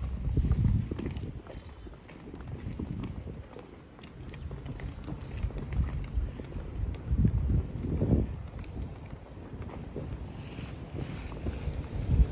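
Several people in hard-soled dress shoes walking past on a tarmac road, their steps clicking irregularly. Low gusts of wind rumble on the microphone, loudest about half a second in and again around eight seconds in.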